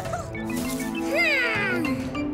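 Cartoon background music, with a short high cry from a cartoon monkey that slides downward in pitch about a second in.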